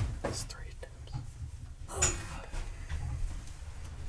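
Quiet handling noise of electrical wire being worked through plastic conduit: faint rustles and a few light knocks, over a low steady rumble.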